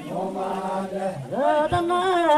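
Villagers chanting a traditional song, with long held notes that slide up and down in pitch and a rising glide just past the middle.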